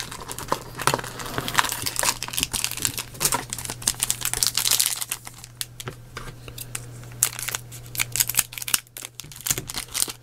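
Foil booster-pack wrappers crinkling as they are pulled from a cardboard booster box and handled, an irregular run of crackles, with a low steady hum underneath.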